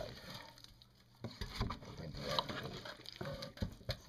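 Hands handling and poking a raw, marinated pork shoulder in a bowl: irregular soft squishes, taps and rustles, picking up about a second in.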